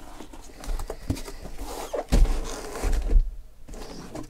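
Corrugated cardboard shipping case being handled: flaps rustling and scraping, with a few knocks and dull thumps about two seconds in, as the case is lifted off the stacked boxes of cards.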